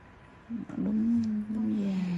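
A person's voice making one long, drawn-out vocal sound that starts about half a second in and sinks slightly in pitch.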